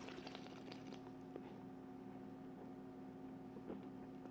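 Faint sip of sparkling wine from a glass: a soft crackle of small ticks through the first second, over a steady low hum.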